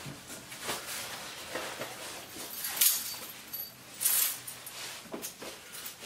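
Handling of a cardboard brake-rotor box and its packing: scattered rustles, taps and scrapes, with two sharper rustles about three and four seconds in.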